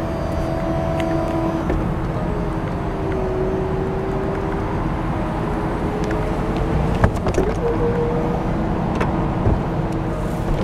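2007 Jaguar XK convertible's power soft top raising: the motor runs with a steady whine that shifts pitch a few times as the top unfolds. There is a clunk about seven seconds in and a few clicks near the end as the mechanism moves the roof and tonneau cover.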